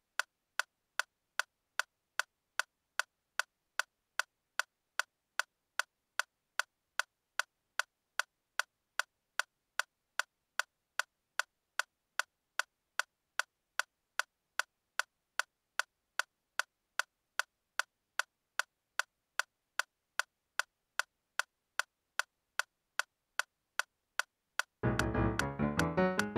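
Metronome clicking at a steady tempo, about two and a half identical clicks a second, with silence between them.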